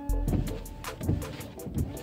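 Audi A6 C6 windscreen washer pump running as the washer stalk is held, spraying the glass, with the wipers starting to sweep; the low hum starts suddenly and fades within about a second. The headlight washer pump does not run: it has been switched off. Music plays quietly in the background.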